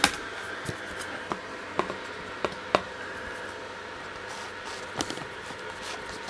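A few light clicks and taps, about half a dozen spread through the first three seconds and one more near five seconds, as an acrylic sheet is picked up and handled, over a steady faint background hum.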